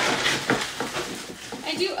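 Pebble ice being scooped out of a plastic bag and dropped into a plastic cup of cold brew: a quick run of small clicks and crackles from the ice pellets and the bag.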